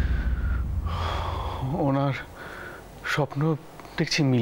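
A deep boom from a dramatic sound-effect hit, rumbling away over the first second and a half, followed by two short exclamations from a man's voice.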